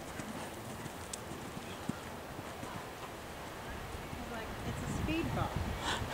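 Dull hoofbeats of a horse cantering on a sand arena.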